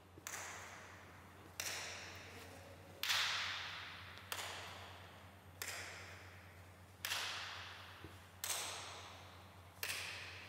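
A sharp swish-like hit repeating evenly, eight times about every one and a half seconds, each one dying away over about a second, over a faint low hum.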